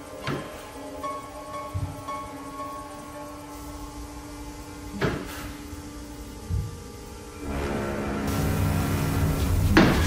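A few thuds spaced out in an empty building, sharp knocks near the start, in the middle and near the end, over eerie background music with a held tone that swells louder in the last few seconds.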